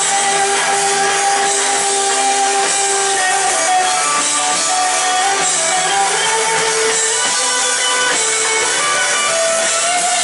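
Live indie rock band playing through a festival PA: electric guitars, keyboards and drums, with long held notes that step to a new pitch every few seconds. No singing is heard in this stretch.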